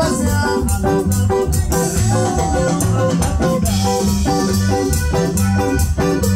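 Live band playing an upbeat cumbia dance tune, with a steady beat, a repeating bass line and keyboard melody.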